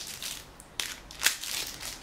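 Thin plastic packaging crinkling and crackling as a makeup brush is handled, in scattered rustles with one sharper crackle just after a second in.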